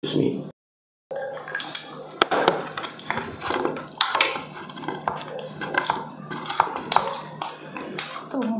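Eating sounds: a spoon clicking and scraping against plates of food, many short sharp clicks, with a brief dropout to silence in the first second.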